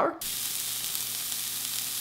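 Riced cauliflower sizzling in a hot skillet. The hiss starts suddenly just as the cauliflower goes into the pan and holds steady.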